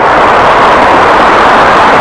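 Steady, loud roar of road traffic on the Brooklyn Bridge's roadway, an even noise with no single vehicle standing out.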